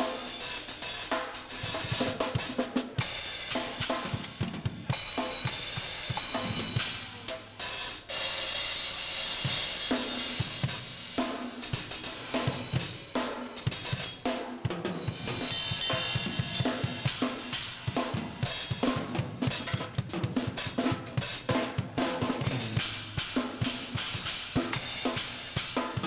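A child playing a gospel-style drum kit solo: busy, unbroken snare and bass drum strokes with cymbals ringing over them in several stretches.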